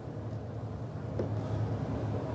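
A boat engine running steadily: a low, even hum with a faint hiss over it.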